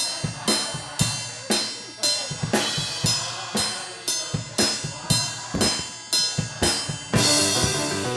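Instrumental music driven by a drum kit: a steady beat of bass drum and snare at about two strikes a second, with a cymbal crash that rings on from about seven seconds in.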